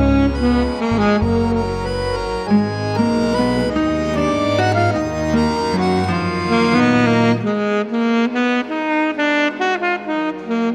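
A small band playing a tune led by saxophone over accordion and a low bass line; the deep bass drops out about seven and a half seconds in.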